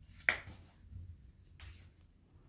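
Handling noise: one sharp click about a third of a second in, followed by a few faint short rustles and taps.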